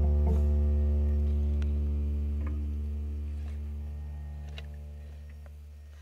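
Background music: a held guitar chord ringing on and fading out steadily.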